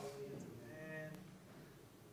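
A faint, brief drawn-out voiced sound from a person, like a low murmur or hum, in the first second, then near silence.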